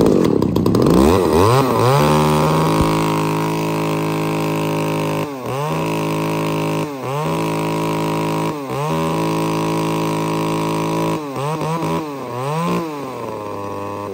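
Small two-stroke Tanaka chainsaw revving up just after catching, then held at high revs. Several times its speed dips briefly and picks back up as the throttle is eased and squeezed, and it slows down near the end.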